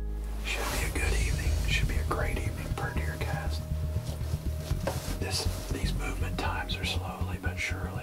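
A man whispering, with a low steady rumble underneath.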